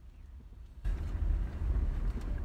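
Low road and engine rumble of a moving car heard from inside the cabin, jumping suddenly louder about a second in with wind buffeting the microphone.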